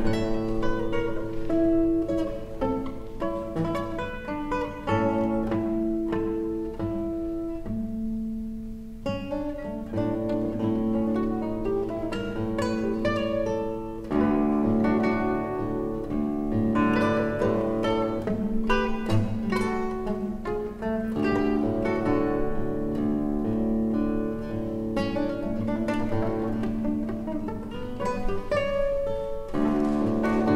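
Solo classical guitar played fingerstyle: a plucked melody over held bass notes, with a brief lull about eight seconds in.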